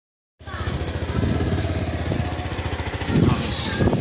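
An engine running steadily with a fast low pulse. It starts about half a second in, and brief voices come in near the end.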